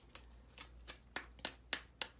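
A tarot deck being shuffled and handled: a series of faint, irregular papery clicks of card against card.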